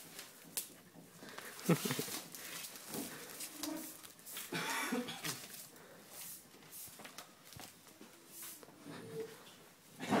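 Irregular rustling, shuffling and scattered knocks of a person struggling on a hard floor with taped ankles, with a few brief muffled vocal sounds.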